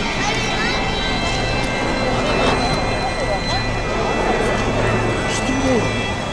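Indistinct chatter of people in a crowd, over a steady low hum and faint high steady tones.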